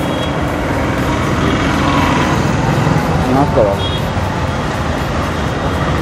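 Road traffic passing close by: motor vehicle engines and tyres, building over the first second or two and then running steadily. A brief high beep sounds about four seconds in.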